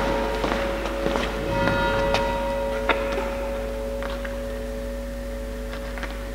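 Bell-like struck tones ringing on and slowly fading, with a few new notes struck in the first two seconds. There is a light knock about three seconds in.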